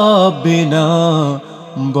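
A male voice singing a slow, melismatic line of a Bengali Islamic gojol: a long wavering held note, then a lower held note, with a short drop in level about a second and a half in before the next note.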